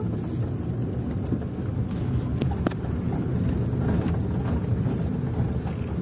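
Car driving slowly up a cobblestone street, heard from inside the cabin: a steady low rumble of engine and tyres on the cobbles, with a few light knocks about two to three seconds in.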